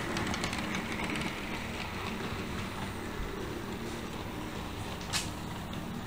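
HO scale model train running on the layout: a steady low hum with running noise from the track, and a single sharp click about five seconds in.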